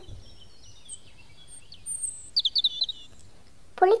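Birds chirping: a few thin, high calls, then a quick run of short notes about two and a half seconds in.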